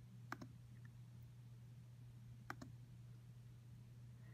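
Two faint clicks on a laptop, about two seconds apart, each a quick press and release, as an item is chosen from a drop-down menu, over a low steady hum.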